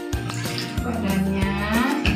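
Himalayan cat giving one long drawn-out yowl that rises in pitch, the protest of a cat being held and doused with water during a bath, over background music.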